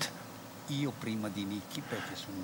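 A man's voice speaking quietly, well below the level of the talk around it, after a brief lull at the start.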